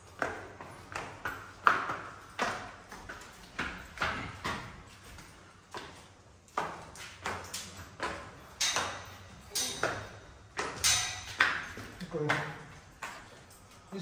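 Footsteps in sneakers on stone stairs and a tiled hallway, about two steps a second, each step echoing off bare walls.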